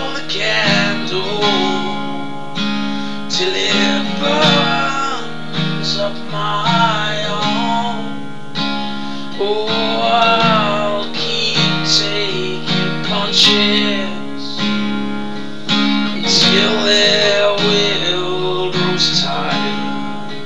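Acoustic guitar strummed in a slow, steady chord pattern, with a wavering vocal melody over it that has no clear words.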